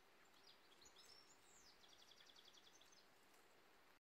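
Faint birdsong over quiet outdoor background hiss: scattered short high chirps, then a rapid trill of about a dozen notes beginning about two seconds in.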